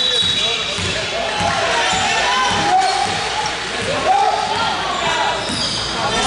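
Basketball game sounds in a gym: players and spectators calling out in overlapping voices, with a ball bouncing on the hardwood court.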